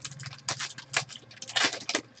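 A foil trading-card pack crinkling and crackling as it is handled and ripped open by hand, with the cards inside rustling: a rapid, irregular run of sharp crackles.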